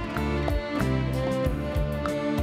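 Live instrumental music from a small band: keyboards and violin playing a melody over a steady percussion beat.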